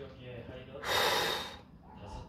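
A short rush of water from a kitchen tap during dishwashing, a loud even hiss lasting under a second, starting about a second in.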